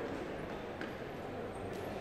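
Faint marker strokes and light taps on a whiteboard as a pipe is drawn, over a low steady room hum.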